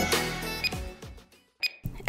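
Background electronic music fading out, then, after a moment of near silence, one short bright ding: the workout timer's signal that the exercise interval is over and rest begins.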